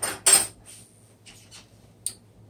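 A metal butter knife clattering briefly as it is picked up, followed by a few faint light clicks.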